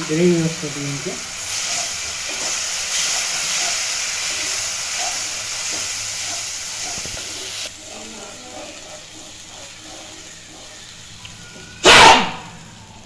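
Masala gravy of spices and water sizzling in a non-stick frying pan. The sizzling is stronger through the first part and drops to a softer hiss about two thirds of the way in. A loud sharp knock comes right at the end.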